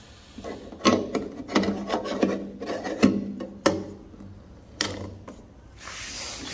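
Metal fuel cap being screwed onto a generator's fuel-tank filler neck: a run of grating scrapes broken by about six sharp clicks as it is turned down.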